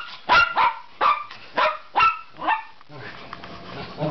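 A Miniature Pinscher barking in short, sharp barks, about six of them, roughly two a second, that stop about three seconds in.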